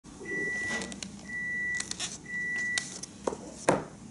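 Three steady, high electronic beeps, each about half a second long and about a second apart. They are followed by a few light knocks and one sharp click near the end as a hunting knife is handled over a wooden table.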